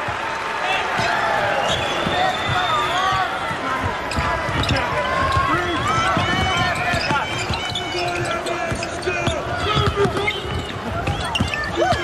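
A basketball dribbled on a hardwood court, with repeated short thumps, and sneakers squeaking in short chirps, over steady arena crowd noise.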